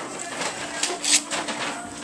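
Paper rustling and tearing as a child's hands open a greeting-card envelope, with a couple of sharper rips about a second in.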